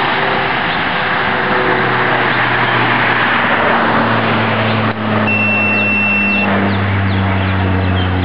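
Road traffic passing: a pickup truck's tyre and engine noise, loud and steady, as it drives by and away, with a low engine hum that shifts in pitch. A thin, steady high beep sounds for about a second just past the middle.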